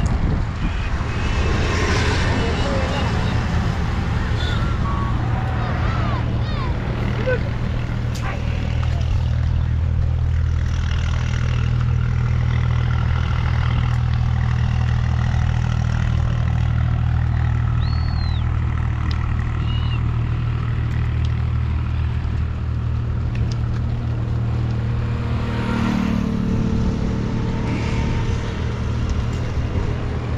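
Steady low drone of a vehicle engine running, with a few short high calls above it.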